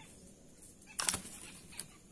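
A stick-and-string snare trap being tripped by hand: one sharp wooden clack about a second in as the trigger springs loose, then a faint tick shortly after.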